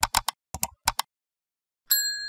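Outro animation sound effects: a quick run of about eight short, sharp clicks like keyboard typing, in three small clusters over the first second. Just before the end comes a bright bell-like chime of several clear high tones that rings on.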